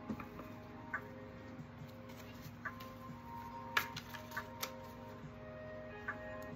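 Soft background music with sustained notes, over which a few light, irregular clicks and taps sound, the loudest about two-thirds of the way in: tarot cards being drawn and laid down.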